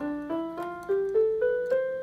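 Casio CTK-3200 portable keyboard playing an ascending C major scale, one note roughly every quarter second. It ends on the top C, held and fading away.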